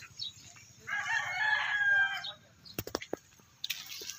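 A rooster crowing once, one pitched call of about a second and a half starting about a second in, followed by a few short sharp clicks.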